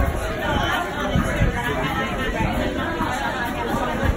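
Indistinct chatter of several people talking at once, with a brief thump right at the start.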